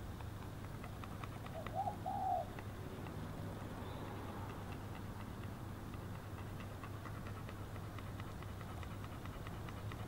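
A dove cooing: a brief call of two or three short arched notes about two seconds in, over a steady low hum.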